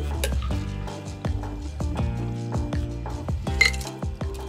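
A shaken cocktail poured from a metal cocktail shaker into a glass full of ice, with many small clinks of ice against metal and glass, over background music.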